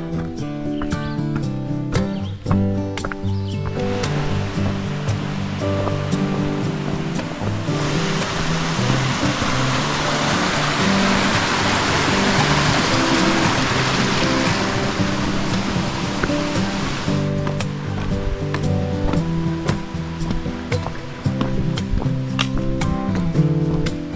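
Background music with a steady beat of stepped notes. From about four seconds in, the rush of flowing water swells up under it, is loudest in the middle, and fades out after about seventeen seconds.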